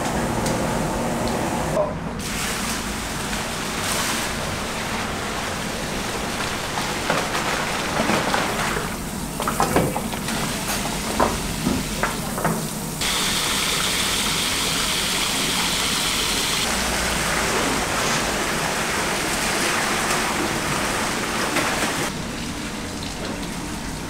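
Kitchen sounds of big steel pots of ox-bone broth: liquid sloshing and splashing as it is ladled and stirred, with a few knocks of utensils against the pot in the middle. A steady rush of water fills the second half.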